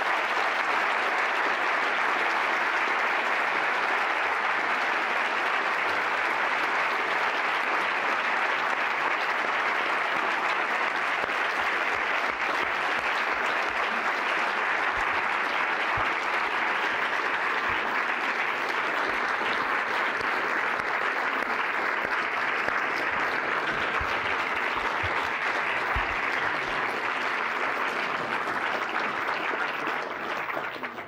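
A large audience applauding, a long, steady round of clapping.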